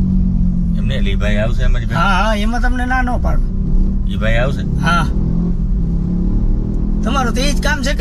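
Steady low rumble of a car's engine and road noise inside the moving cabin, under men's conversation.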